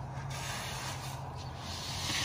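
Screed bar and rakes scraping and dragging through wet concrete: a steady rough rasp that grows a little brighter near the end, over a constant low hum.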